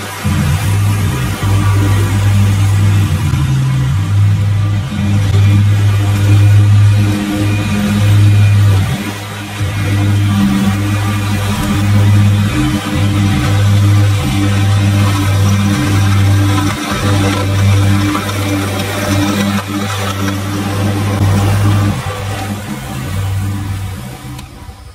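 Zero-turn riding mower engine running as it cuts tall grass, mixed with background music that has a steady bass line.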